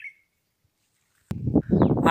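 A single short bird chirp at the very start, then silence. About a second and a half in, a low rumble on the microphone begins suddenly and a man's voice starts.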